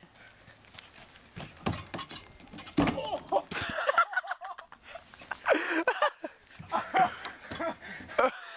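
Quick footsteps on loose playground ground, then a heavy thud a little under three seconds in as a person falls onto his back, followed by short shouts and laughter from young men.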